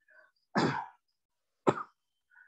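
A person coughing twice: a longer cough about half a second in and a short one near the end.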